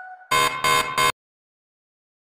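Quiz countdown timer's time-up buzzer sound effect: three short buzzes in quick succession, starting about a third of a second in and cutting off abruptly. It follows the fading ring of the last countdown tick.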